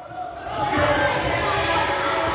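Indoor basketball game sound in a large, echoing gym: several voices from players and spectators shout over one another, swelling about half a second in and staying loud, with the game's court noise underneath.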